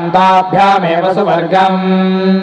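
Vedic Sanskrit chanting (Veda parayanam): a voice reciting syllables on a near-steady pitch, settling into one long held syllable near the end.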